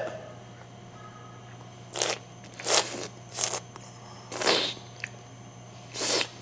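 Olive oil being tasted by slurping: air sucked sharply in over a sip of oil held in the mouth, to aerate it and carry it to the back of the palate. Four short slurps come between about two and four and a half seconds in.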